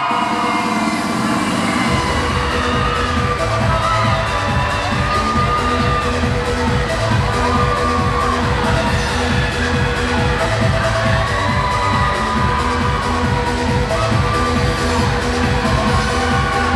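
Cheerleading routine music: a loud electronic mix whose heavy, driving beat kicks in about two seconds in, with sung or sampled vocal lines and held synth tones over it.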